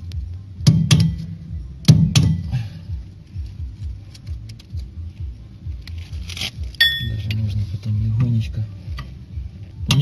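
Light hammer taps seating a new front wheel-hub oil seal into a Ford Sierra's steering knuckle: four sharp taps in the first two seconds. Small metallic clicks follow, with a short metallic ring about seven seconds in.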